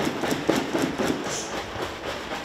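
Milk sloshing and knocking in a large plastic jug shaken back and forth by hand, in an even rhythm of about four knocks a second.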